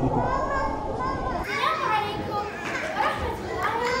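Children's voices talking in a large hall, indistinct and overlapping, with the sound changing abruptly about a second and a half in.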